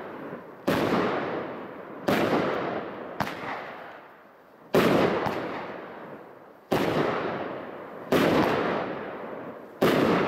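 A 12-shot consumer firework barrage cake firing. There are six sharp bangs, each one to two and a half seconds after the last, with a couple of smaller pops between them, and each bang fades out in a long tail before the next.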